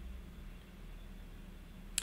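Quiet room tone with a steady low electrical hum, and a single computer mouse click right at the end as a context-menu item is chosen.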